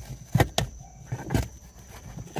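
Hands handling a plastic rearview mirror and a dash cam power wire at the windshield header: several sharp clicks and knocks, the loudest about half a second in and again near one and a half seconds, over a low rumble.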